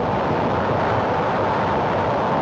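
Sustained rumble of a nuclear-explosion sound effect on an old film soundtrack, a steady noise with no break.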